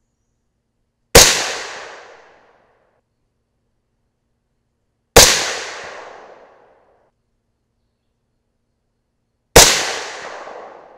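Three suppressed rifle shots about four seconds apart, each a sharp crack that fades out over a second and a half. The rifle is a suppressed short-barrelled AR in 300 AAC Blackout firing supersonic Barnes TAC-TX handloads.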